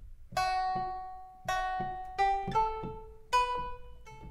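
Sampled pipa, the Chinese plucked lute, played from a keyboard: a short phrase of about seven single plucked notes, each with a sharp attack and a ringing decay, the melody stepping upward.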